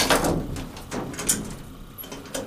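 Elevator car door dying away as it shuts, followed by two sharp clicks about a second in as the car's push buttons are pressed. No motor starts in response, a sign that the elevator is switched off or broken.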